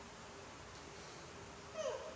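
A young macaque gives one short call that falls quickly in pitch, near the end, over a faint steady hiss.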